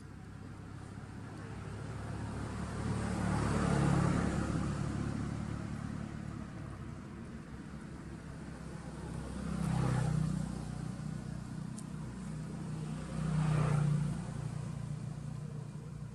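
Motor vehicles passing on a road: three passes that each swell and fade, about four, ten and thirteen and a half seconds in, over a steady low engine hum.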